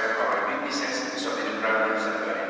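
A man speaking into a microphone: speech only.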